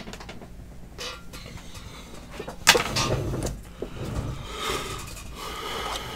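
A trading card in a soft plastic penny sleeve being handled and slid against a rigid plastic top loader. There is a sharp tap about two and a half seconds in, then scraping and rustling of plastic.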